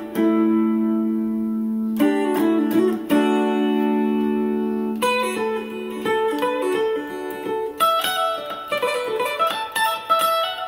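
Electric guitar with a capo playing an Irish-style melody: long ringing notes over the first few seconds, then quicker runs of single notes from about five seconds in.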